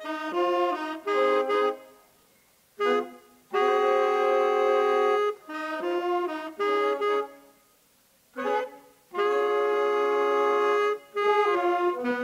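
Saxophone quartet of young students playing in harmony: phrases of short moving notes alternate with held chords of about two seconds, with two pauses of about a second between phrases.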